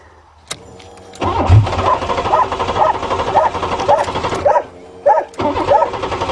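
Buick 3.8 V6 being cranked by its starter motor, turning over with an even pulsing rhythm but not catching. There is a click of the ignition key about half a second in, a crank of about three seconds, a short stop, then a second crank near the end: the engine won't start.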